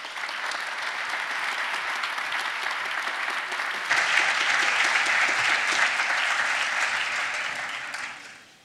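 Audience applauding, the clapping growing louder about four seconds in and fading near the end.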